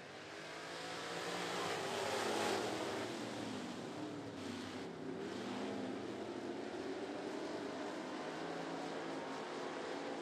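A pack of dirt-track stock cars racing at full throttle. The engine noise swells over the first couple of seconds as they come by, then holds steady, with the engines rising and falling in pitch.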